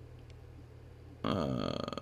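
A man's low, croaky, drawn-out "uhh" starting suddenly about a second in, its pitch falling, over a faint steady low hum.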